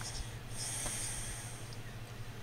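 A long breathy exhale, starting about half a second in and lasting about a second, over a steady low hum.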